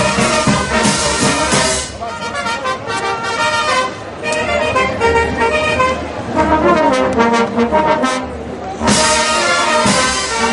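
Brass band of trombones, trumpets and sousaphone with snare and bass drum, playing a tune. The full band is loud at first, drops to a softer passage about two seconds in, and comes back in full about a second before the end.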